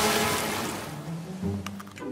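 A sea wave crashing over a person wading in the water: a loud rush of splashing water that fades away, with light background music underneath.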